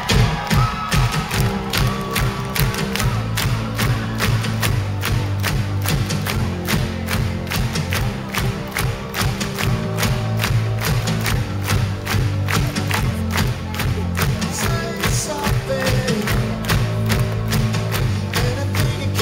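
Live pop-rock band playing an instrumental passage with a steady beat: drum kit, bass guitar line and keyboards, with the audience clapping along.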